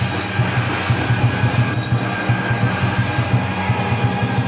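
Taiwanese temple percussion of drum and large brass gongs played together in a fast, even beat, the gongs ringing on, accompanying a Guan Jiang Shou performance.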